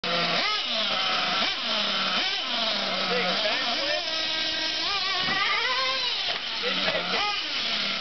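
Small nitro glow engine of a Losi LST2 radio-controlled monster truck revving up and down over and over as it is driven, its pitch climbing and dropping back every second or so.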